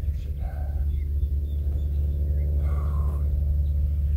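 A steady low rumble, with a few faint short sounds over it.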